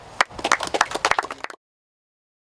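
A small group of people clapping, a scattered round of applause that cuts off abruptly about a second and a half in.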